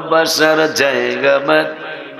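A man singing a devotional naat about Madina as a solo voice, drawing out held notes that bend up and down in pitch, trailing off near the end.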